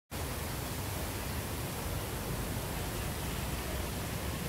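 Steady, even rushing noise of an open-air city space, with an unsteady low rumble underneath and no distinct events.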